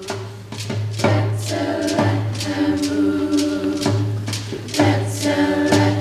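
A school choir singing held chords, swelling in the first second, over a sharp percussive beat about twice a second.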